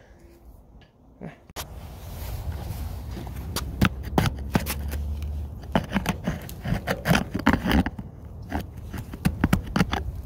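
An inspector's probe tapping and poking composite house siding to check it for damage: many irregular sharp taps and knocks, starting about a second and a half in and clustering in quick runs, over a low rumble.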